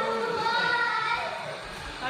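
Excited high-pitched voices cheering in long held whoops, fading toward the end.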